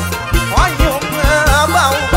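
Live Thai luk thung band music: a steady kick-drum beat and bass under a sliding lead melody.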